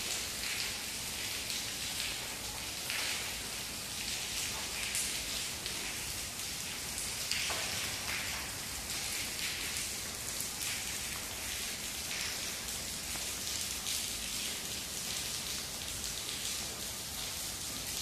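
Steady rain falling, an even hiss with a few louder spatters.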